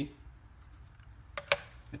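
Two sharp clicks about a tenth of a second apart, the second louder, over faint room tone.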